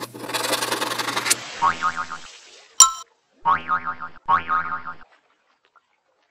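Cartoon-style intro sound effects for an animated logo: a hissing whoosh, then a springy boing-like twang, a sharp click, and two more twangs in quick succession, each fading away, before the sound stops about five seconds in.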